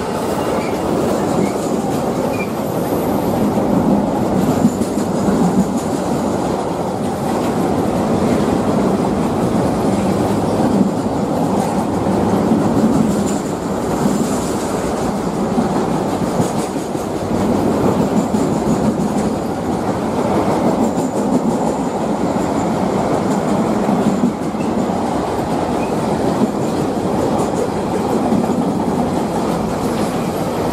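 A long freight train of covered car-carrier wagons passing close at speed behind a Class 66 diesel locomotive: a steady loud rumble and clatter of wagon wheels on the rails, swelling and easing slightly as the wagons go by.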